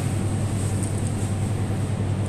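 A steady low mechanical hum with a thin high whine above it, unchanging throughout.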